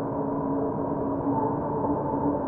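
A steady ambient drone of several held tones, the lowest and strongest deep and humming, with no strikes or breaks.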